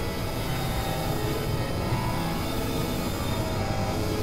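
Experimental electronic synthesizer drone music: dense layers of held tones over a heavy low rumble, at a steady level throughout.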